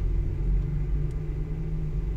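Steady low background rumble and hum, with no clear events.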